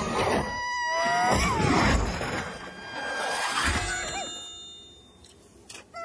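Cartoon soundtrack of music mixed with sliding pitched sound effects and wordless character cries, fading away over the second half. A short sharp hit and a brief wavering cry come near the end.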